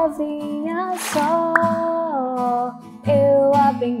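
A woman singing a children's gospel song while strumming an acoustic guitar, with a short pause about three-quarters of the way through before the singing picks up again.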